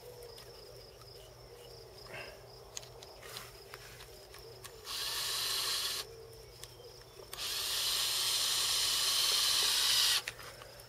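Cordless drill driving screws through a 3D-printed plastic pipe loop into a wooden post: a short run of about a second in the middle, then a longer run of about three seconds that stops at the end.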